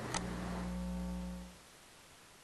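Faint low steady hum made of several even tones, with a faint click just after it begins. The hum fades out about one and a half seconds in, leaving silence.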